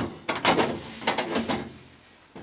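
Metal filing cabinet's roll-back door being pulled out along its tracks, with a run of rattling clicks and knocks for about a second and a half.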